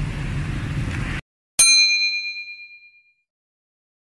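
Street traffic noise that cuts off abruptly about a second in, followed by a single bright, bell-like chime sound effect that rings out and fades over about a second and a half.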